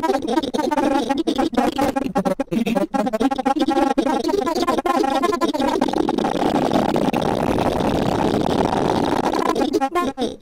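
Granular effects output of a TipTop Audio Z-DSP Eurorack processor running the Grain De Folie card's pitch-modulated grain algorithm. It chops a voice into stuttering, pitch-shifted fragments. About halfway through, the fragments blur into a dense, smeared grain cloud.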